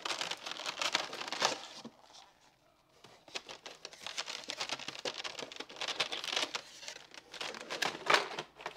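Thin plastic seed-starting trays and a cardboard box being handled: crinkling, rustling and light plastic clicks as stacked trays are pulled out and set down and the box flaps are worked. There is a short quiet pause about two seconds in.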